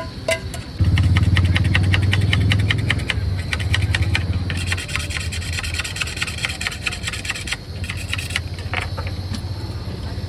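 A vehicle engine starts suddenly close by, about a second in, and keeps running with a low rumble that is loudest over the first couple of seconds. Rapid, fine scraping strokes sound over it through the first half, as cheese is grated over the plate of noodles.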